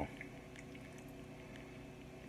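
Quiet room tone: a faint steady hum with a few light ticks.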